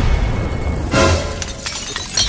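Logo-animation sound effects over music: a glass-shattering crash, with a second crashing burst about halfway through.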